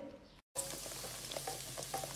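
Breadcrumb-coated bread pocket deep-frying in hot oil: a steady sizzle with small crackles, starting about half a second in after a brief silence.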